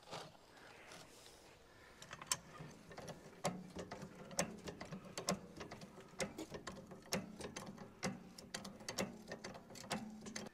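Hydraulic bottle jack being pumped by hand to lift a yacht's rudder back into position: a run of sharp clicks, about two a second, starting about two seconds in.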